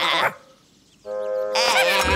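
A cartoon monkey's wordless vocal chatter with a wobbling pitch. It cuts off about a quarter second in, leaving a short gap of near silence. A held music chord comes in at about one second, and the chatter starts again near the end.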